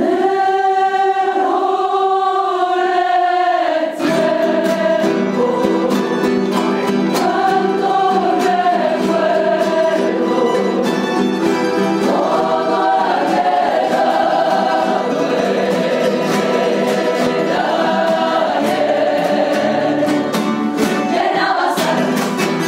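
A Cádiz Carnival coro, a mixed choir of women and men, singing in harmony. It holds a sustained chord for about the first four seconds, then sings on over plucked and strummed classical guitars and bandurrias.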